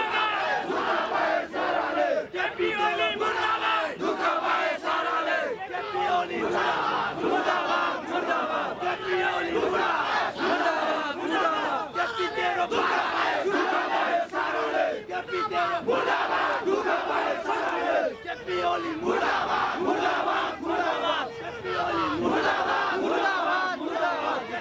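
Large crowd of men shouting protest slogans, many voices overlapping without a break.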